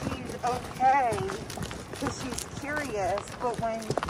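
Indistinct high voices over footsteps on a leaf-covered dirt trail.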